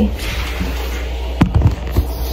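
Handling noise from a phone camera being picked up and moved by hands in oven mitts: a rubbing rustle on the microphone, then a few sharp knocks about one and a half seconds in.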